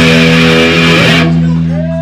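Live rock band ending a song: the full band with crashing cymbals cuts off about a second in. A low guitar and bass chord is left ringing and slowly fading, with a voice calling out over it near the end.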